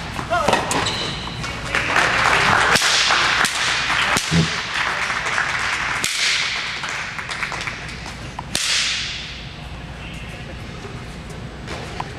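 A tennis racquet being slammed repeatedly onto a hard court: several sharp cracks, the biggest about three, six and eight and a half seconds in, each ringing on in a reverberant indoor hall.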